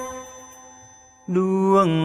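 Khmer song: the accompanying music fades away over the first second, then a singer's voice comes in about a second in, holding a note that slides down in pitch.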